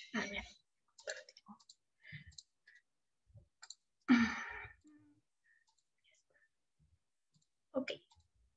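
Faint, scattered computer mouse clicks heard over a video-call line as screen sharing is set up, with a brief breathy vocal sound about four seconds in.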